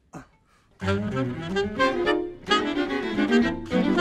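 Alto saxophone and string quartet begin playing together about a second in, in quick pitched phrases with a brief break partway through.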